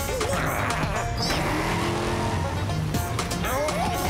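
Cartoon sound effect of a pickup truck's engine running and pulling away, with a hiss of tyres on the road. The background music drops out for it and comes back near the end.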